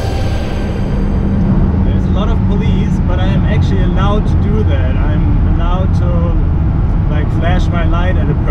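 Steady low drone of the Lamborghini Huracán's V10 engine and tyre noise, heard inside the cabin while driving. A man talks over it from about two seconds in. A fading tail of music is heard at the very start.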